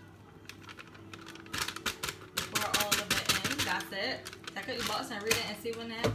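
Plastic inner bag of brownie mix crinkling as it is shaken out over a glass bowl, with a quick run of clicks and rustles in the first half.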